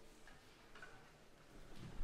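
Near-silent hall with a few faint knocks and clicks from people moving about the stage between pieces, the loudest near the end.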